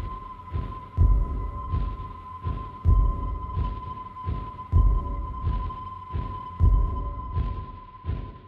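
Tense soundtrack: low heartbeat-like thumps repeating a little faster than once a second, under a steady high held tone.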